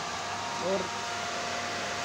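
Egg incubator's circulation fan running, a steady, even rushing noise with a faint hum.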